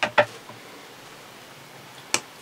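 Two sharp clicks right at the start as a white caprolon wheel with a pressed-in bearing is handled, then faint steady room hiss.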